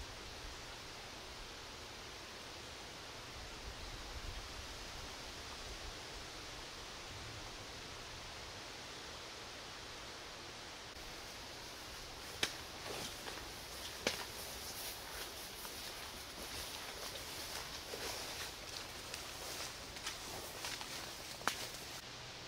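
Wind moving through forest leaves, with wind buffeting the microphone. From about halfway, footsteps rustling through undergrowth, with a few sharp snaps like twigs breaking.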